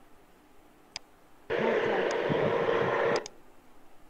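A single click about a second in, then a loud burst of static-like hiss, with a faint voice under it, that switches on abruptly and cuts off sharply after under two seconds, like a call participant's microphone opening on a noisy line.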